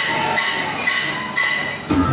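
Opening of a recorded salsa track: about four ringing percussion strikes, roughly two a second, with faint crowd noise behind them.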